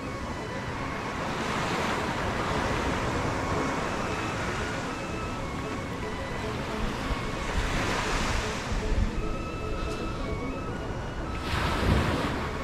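Surf washing in on a sandy beach, a steady rush of breaking waves that swells a little after the start, again around eight seconds, and once more near the end, with some wind on the microphone.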